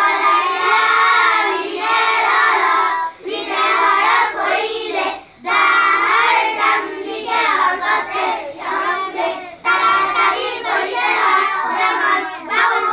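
A group of children chanting Arabic recitation in unison, in a sing-song drill, with brief pauses about three, five and ten seconds in.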